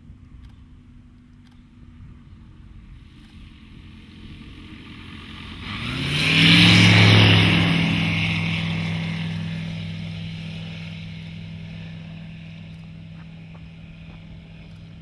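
Aeroprakt Foxbat light aircraft's engine and propeller in a low fly-by. The sound grows louder as the plane approaches and is loudest about halfway through. It then drops in pitch and slowly fades as the plane flies away.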